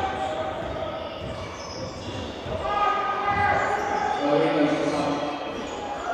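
Basketball being dribbled on a wooden sports-hall court, repeated bounces echoing in the large hall, with voices of players and onlookers in the background.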